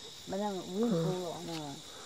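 An old woman's voice speaking quietly for about a second and a half, over a steady high trill of insects.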